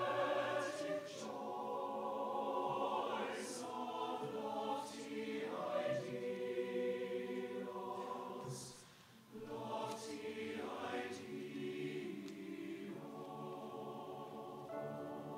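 Mixed choir of men's and women's voices singing sustained chords, with a short break between phrases about nine seconds in.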